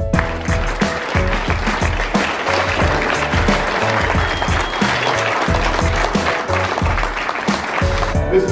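Audience applauding, a dense steady clapping over music with a steady beat.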